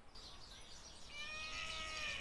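A woman's breath, then a strained, high-pitched closed-mouth groan, held about a second and a half and falling slightly, starting about a second in. She is bearing down against a held breath, a Valsalva-style strain meant to slow a racing heart.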